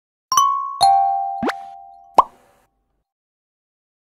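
Intro sound-effect jingle: two ringing chime notes, the second lower, followed by two quick rising 'bloop' pops, the last one the loudest.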